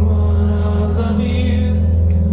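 Live worship music from a church band: sustained chords held over a steady low bass note, with singing.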